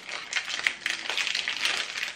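Plastic sweet packet crinkling with quick, irregular crackles as hands try to tear it open.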